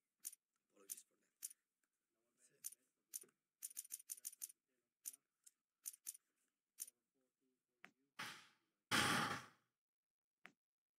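Short, sharp clicks from an online blackjack game as chips are stacked onto the bet, about fifteen over the first seven seconds, some in quick runs. Near the end comes a loud, breathy sigh into the microphone, the loudest sound.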